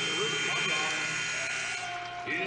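Arena sound of a live basketball game, carrying a steady high-pitched whine, with a lower steady tone joining about a second and a half in.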